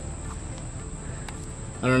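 An insect chorus singing steadily on one high pitch, with a couple of faint clicks; a man's voice starts right at the end.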